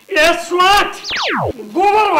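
A comedy sound effect: a quick falling whistle that drops steeply in pitch, about a second in, between two stretches of a man's drawn-out, wavering vocal cries.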